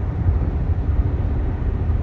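Steady low road and engine rumble inside a car cabin while driving at freeway speed.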